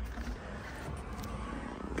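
Steady low background noise inside a car's cabin, with no distinct events.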